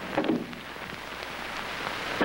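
Steady hiss and crackle of an old film soundtrack, with a brief faint voice-like sound just after the start.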